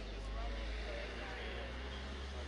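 Indistinct background talking over a steady low rumble.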